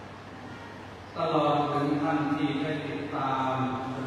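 Male voice chanting in a steady monotone, starting about a second in, in the manner of Buddhist Pali chanting.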